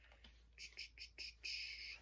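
A woman whispering quietly to herself in a string of short hissy bursts, with no voice behind them, as she reads off a price.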